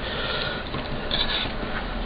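Steady background hiss in a small room, with no distinct clicks or knocks.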